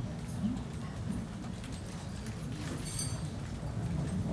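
A metal chain of office clinking as it is handled, with scattered light clicks and one brief bright metallic clink about three seconds in, over a low murmur in the hall.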